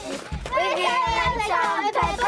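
A group of young girls chanting a dugout cheer together in sing-song voices, with low thumps keeping time.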